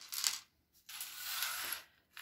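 Small plastic knitting accessories (stitch markers and round row counters) clicking lightly as they are set down on a tabletop, followed by about a second of soft scraping as they are slid across it.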